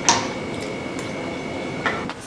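A steel spoon clinking against a small steel bowl while scooping curd: a sharp clink just after the start, another shortly before the end, and a few faint taps between. A thin steady high tone runs underneath and stops near the end.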